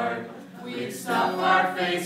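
A small mixed group of men and women singing a song together, with an acoustic guitar accompanying them; the singing drops briefly between lines about half a second in, then comes back louder.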